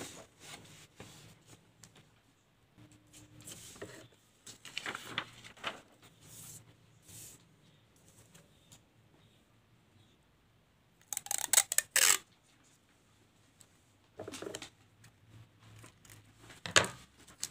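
Paper sheets being handled and slid about on a table, with soft scattered rustles and taps. About two-thirds through comes a loud burst of rapid sharp crackling lasting about a second, from working with scissors and tape on the sticker paper, and a shorter burst near the end.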